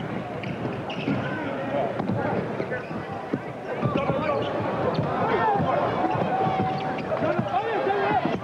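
A basketball dribbled on a hardwood court, with sneakers squeaking on the floor and voices in the arena behind.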